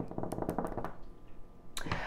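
A quick run of light taps in the first second, fingernails tapping on the table, followed by a quieter stretch and a short breath near the end.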